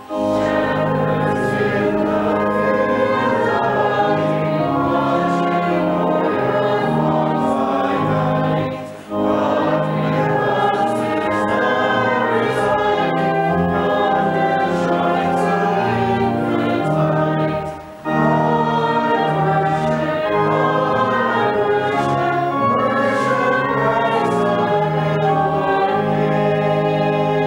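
A hymn sung by voices with organ accompaniment, in steady phrases with brief breaks about nine seconds apart.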